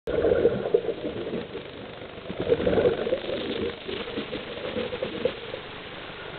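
Heard underwater: a scuba diver's exhaled bubbles gurgling out of a Cressi regulator in irregular bursts, loudest in the first second and again around two and a half to three seconds in.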